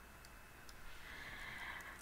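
A few faint computer mouse clicks over quiet room tone, with a soft hiss in the middle.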